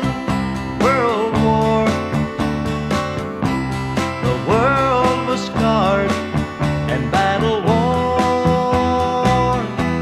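Country music with guitar accompaniment and a lead melody that slides between notes, holding one long note near the end.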